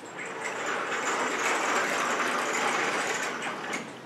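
Chalkboard eraser rubbing across a blackboard, a steady scrubbing noise that swells about a second in and fades near the end.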